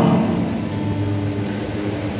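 A steady low hum under faint background noise, with a light tick about one and a half seconds in.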